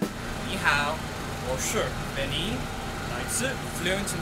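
Steady city street traffic hum, with a man's voice speaking over it.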